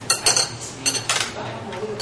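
Metal cutlery clinking against china plates and bowls: a few sharp clinks in two quick clusters, near the start and again about a second in.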